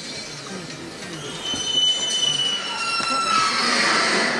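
A high-pitched squeal of several thin tones, gliding slightly downward for about two seconds, followed near the end by a louder rush of noise.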